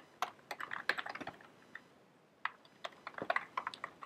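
Typing on a computer keyboard: quick runs of key clicks in two bursts, with a pause of about a second in the middle.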